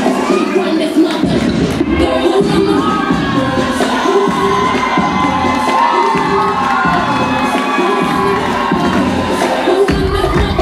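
A club crowd cheering loudly, with many high-pitched screams and whoops, over a pop dance track with a pulsing bass beat played through the sound system.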